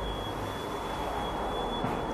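Steady room noise, a low hum and hiss, with a thin, steady high-pitched whine running through it.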